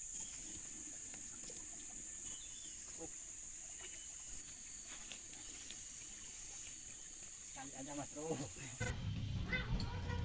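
Steady, high-pitched drone of insects in tropical forest undergrowth. It cuts off suddenly near the end.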